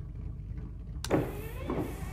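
Low steady hum, then about a second in a sudden electric whir, like a small motor, as a sound effect in a spaceship cockpit.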